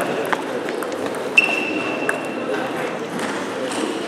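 Table tennis ball being hit and bouncing during a rally, a few sharp clicks of ball on bat and table, over the murmur of voices in a sports hall. The loudest is a sharp knock about a second and a half in, followed by a clear ringing ping that lasts about a second.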